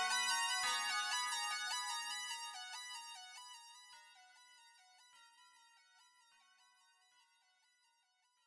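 Electronic music ending: a synthesizer plays a fast repeating sequence of short, bright notes, with a couple of drum hits near the start, and fades out steadily to almost nothing by the end.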